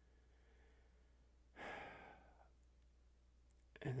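A man's single audible breath, a sigh-like exhale about a second long, in an otherwise near-silent pause in his speech.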